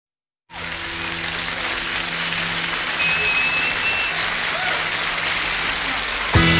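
Audience applause that starts abruptly about half a second in and goes on evenly, over a faint steady low hum, with a single high whistle-like tone for about a second near the middle.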